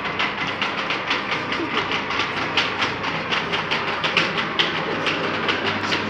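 Rapid, somewhat irregular clattering, several clacks a second, over a steady low hum.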